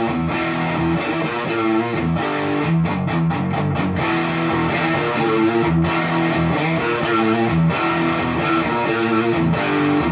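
Fender Noventa Telecaster electric guitar, with its single Noventa single-coil pickup, played continuously in a run of notes, broken by a few short stops about three to four seconds in.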